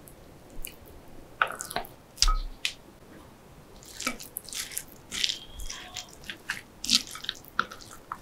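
A metal spoon scooping thick canned liver spread, with a soft thump about two seconds in. From about halfway, a wooden spoon mixes the spread into a bowl of diced onion and chopped kikiam, giving short scrapes and clicks that come more often.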